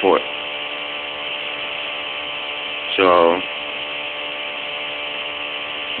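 Bedini SSG pulse motor running at a slow, steady speed while it charges a cellphone battery, a constant buzz made of many even tones.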